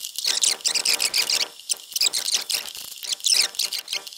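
Ratcheting wrench backing out a small bolt: runs of rapid, high-pitched ratchet clicks in bunches, with short pauses between strokes.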